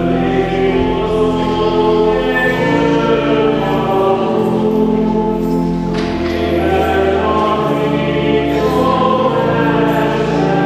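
Church hymn sung by many voices over steady sustained chords, with the notes moving slowly from one held pitch to the next; an offertory hymn during the preparation of the gifts at Mass.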